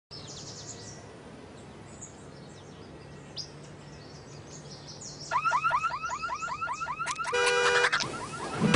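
Birds chirping, then about five seconds in a car alarm goes off on a parked black SUV. It is a loud siren that sweeps up and down about six times a second, and near the end it switches to a rapid pulsing beep of several tones.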